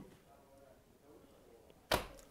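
A quiet pause in a man's talk, ending with a single sharp click near the end.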